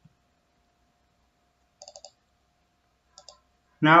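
Computer mouse clicks picked up by the microphone: a quick run of clicks about two seconds in, then a short pair a little after three seconds. A man's voice starts at the very end.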